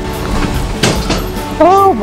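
Background music with a regular beat and held notes. A brief burst of noise comes about a second in, and near the end a man gives a loud, drawn-out exclamation.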